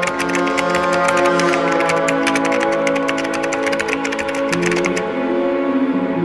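Fast, continuous typing on a computer keyboard, a rapid run of clicks that stops about five seconds in, over sustained background music.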